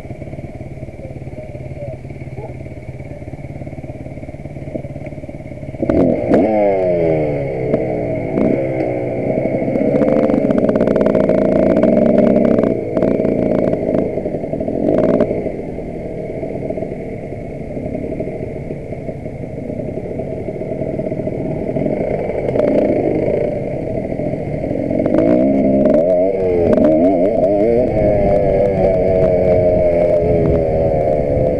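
Enduro motorcycle engine heard from on the bike: idling steadily at first, then from about six seconds in revving and pulling away, its pitch repeatedly rising and falling as it rides, with a second stretch of revving near the end.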